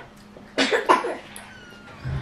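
A person coughing: a few short, breathy bursts about half a second to a second in.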